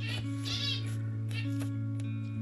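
Two pet zebra finches calling: three short bouts of high calls in about a second and a half, over steady background music.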